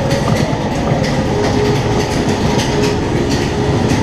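Roller coaster car rumbling and clattering along its track, with many irregular clicks. A faint steady hum joins about a second in.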